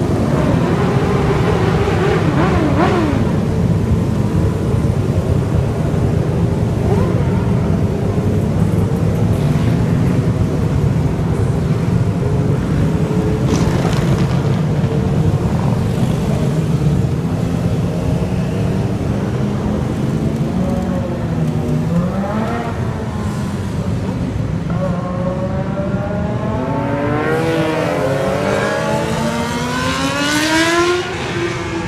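A large group of motorcycles riding past, their many engines making a continuous rumble. Near the end, several bikes rev up and down in pitch as they pull away.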